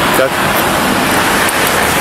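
Steady hiss of road noise from traffic passing on the highway, heard over the body-worn camera microphone.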